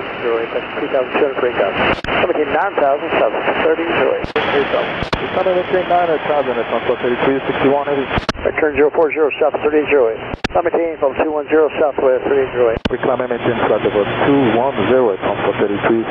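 Air traffic control radio: pilots and an approach controller talking back and forth over a narrow-band aviation radio, with sharp clicks as transmissions key on and off.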